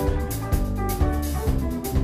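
A live band playing: electric guitars, bass guitar and drum kit, with a steady beat.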